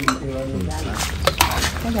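A couple of sharp clinks of dishes or utensils, about a second and a half in, under low talk.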